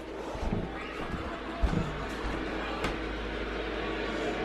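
A wheelchair rolling over a hardwood floor: a low steady rumble from the casters, with a few thumps, the loudest about a second and a half in, and a sharp click near the end.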